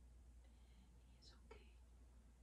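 Near silence: a low steady hum of room tone, with a few faint soft hisses about a second and a half in.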